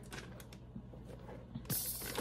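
Faint handling noise of a Nike LeBron 21 basketball shoe being squeezed and flexed in the hands: small creaks and rubbing of the upper and sole, with a brief louder scuff near the end.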